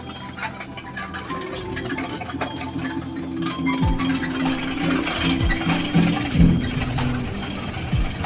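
Metal Buddhist prayer wheels rattling and clicking on their spindles as they are spun by hand one after another, over a melody.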